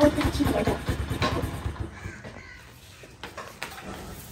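Honda CD70 motorcycle's small single-cylinder four-stroke engine running with a quick, even putter, fading away over the first two seconds as the bike pulls off; then only faint background with a few light clicks.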